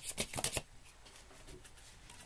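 A deck of tarot cards being shuffled: a fast patter of card edges, several a second, that stops about half a second in, leaving faint room tone.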